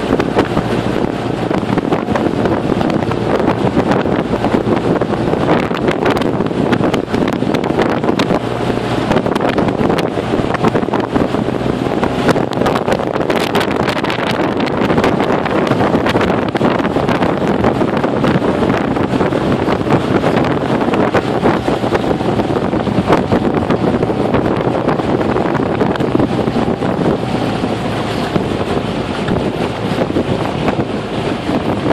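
Steady wind noise on the microphone and water rushing along the hull of a small aluminium boat under way, with a faint, even motor hum beneath.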